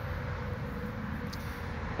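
Can-Am ATV engine idling steadily: a low, even rumble.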